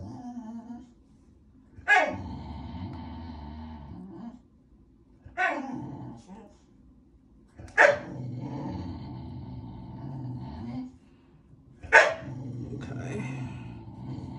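A dog barking and growling in cycles. Each cycle is one sharp bark falling in pitch, then a couple of seconds of low growling. There are four cycles, a few seconds apart.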